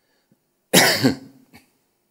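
A person coughing: a loud cough about three-quarters of a second in, with a second push right after it, then a faint short one about half a second later.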